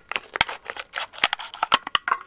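Scissors cutting through a thin clear plastic bottle: a quick, irregular run of crisp snips, about five a second.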